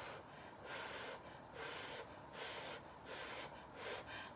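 Noodles being slurped: a faint run of short, airy slurps, about two a second.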